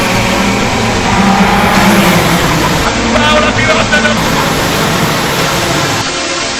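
A pack of racing karts accelerating away together at a race start, many engines running at once in a steady, loud blend.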